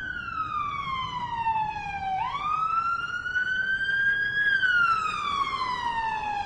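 Emergency-vehicle siren wailing: its pitch falls slowly for about two seconds, sweeps quickly back up, then falls slowly again near the end.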